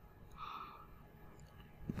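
Quiet room tone with one faint, short breathy vocal sound about half a second in.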